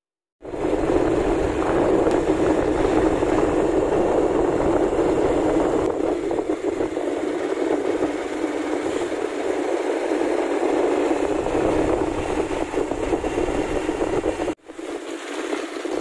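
Steady noise of a Bajaj Pulsar motorcycle being ridden along a road, with engine and rushing wind blended into one loud even sound. It cuts in about half a second in, drops out briefly near the end, and comes back quieter.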